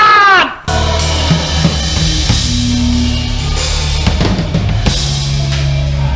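A loud shouted line from an old film clip, cut off about half a second in, then a live band playing: electric bass holding long low notes over a drum kit with bass drum, snare and cymbals.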